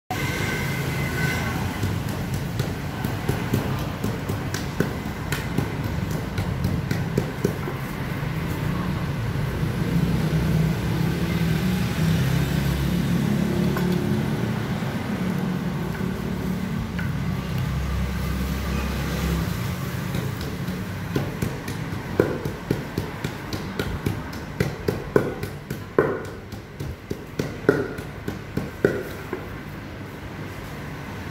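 Wooden pestle knocking in a clay mortar while green papaya salad is made, the knocks coming sharpest and most often in the last several seconds, at about two a second, over a steady low rumble.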